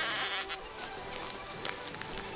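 XP Deus metal detector giving a faint, steady wailing tone: interference from a second detector working on the same frequency.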